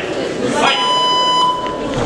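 Electronic timekeeper's buzzer sounding one steady, high tone for about a second, the signal that starts the round, over the murmur of a crowd in a sports hall.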